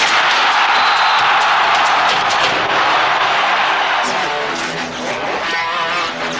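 Television sports theme music with electric guitar. A loud rushing noise comes in at the start and fades away over about four seconds.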